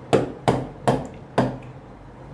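Four hard taps of a pen stylus on an interactive display screen, about half a second apart, as colours are picked from the on-screen palette.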